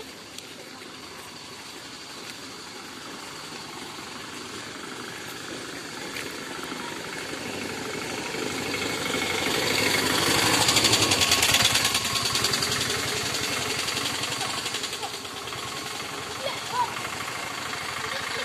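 A vehicle engine passing close by: its fast, even beat grows louder, is loudest about ten to twelve seconds in, then fades away.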